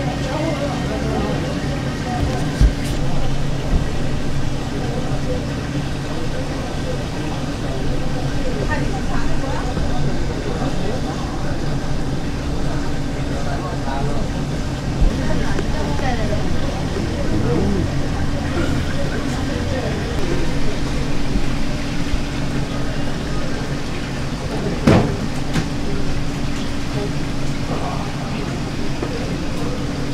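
Steady low motor hum with indistinct voices in the background, and a few sharp clicks, the clearest one near the end.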